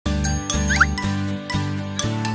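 Bright children's intro jingle: a bouncy music loop with notes and bass about twice a second, with a quick rising sparkle just under a second in.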